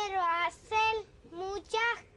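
A child singing four short, steady notes in a high voice.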